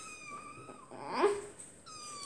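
Young tabby kitten meowing repeatedly: long, high, thin meows that fall slightly in pitch, with a louder rising cry about a second in.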